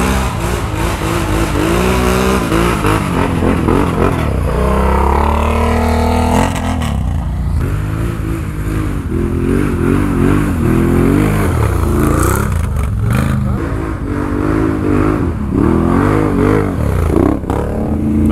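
An ATV engine revs hard under load as the quad climbs a steep slope. The pitch rises over a couple of seconds, then goes up and down over and over as the throttle is worked.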